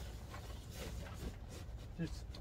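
Quiet handling sounds: faint rustling and a few light taps as a metal J-pole is pushed up against the pop-up camper's tent canvas to hook the bunk rod, over a low steady rumble.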